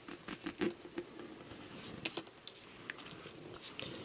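Faint, irregular small ticks and rubbing of fingers handling monofilament fishing line on a hook as the line and tag end are pulled to cinch a knotless knot.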